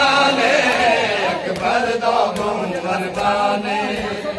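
A crowd of men chanting a Shia noha lament in many overlapping voices. A few sharp slaps cut through about halfway, typical of hands striking bare chests in matam.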